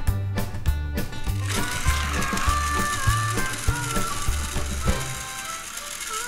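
Upbeat background music with a steady beat. From about a second and a half in, the whirring gear noise of battery-powered TrackMaster toy train motors running on plastic track joins it.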